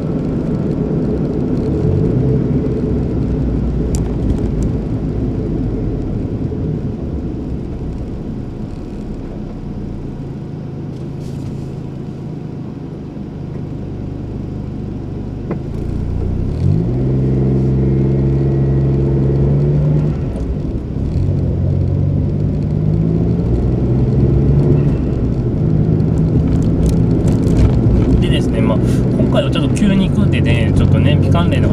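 Car cabin sound while driving: steady engine and road noise. About halfway through it eases off, then the engine note rises as the car pulls away and holds steady.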